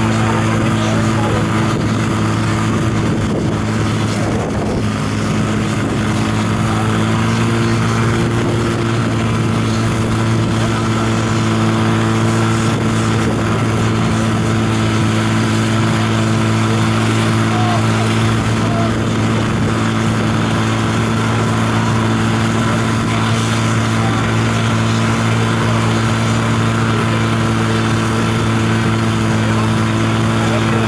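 Portable fire pump engine running flat out at a steady pitch, a constant loud drone while it drives water through the charged hoses to the nozzles. Voices shout over it.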